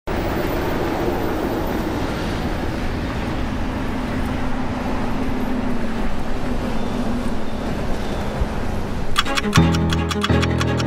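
Steady street traffic noise with a low rumble from passing cars. About nine seconds in, a hip-hop beat starts with a rapid run of sharp clicks and plucked guitar notes.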